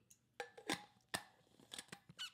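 A few faint, short clicks and taps, spaced irregularly, about five across two seconds.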